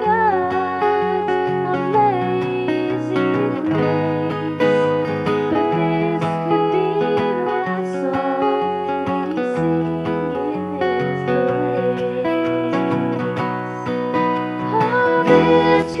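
Southern gospel song played live by a small band with acoustic guitar and bass guitar, with a young woman singing lead.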